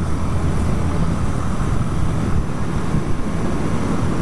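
Honda CBR125R's single-cylinder four-stroke engine running as the motorcycle rides along, with wind noise on a chest-mounted microphone.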